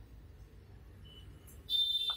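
Faint steady background noise, then a steady high-pitched electronic tone that starts near the end, like a beep or buzzer.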